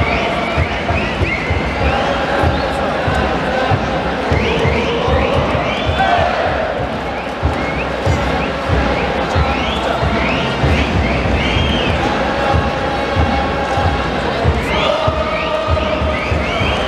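A large crowd of football supporters singing a chant together, loud and steady, with drums thumping underneath.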